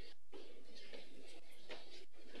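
Quiet hall room tone with faint, indistinct murmuring voices.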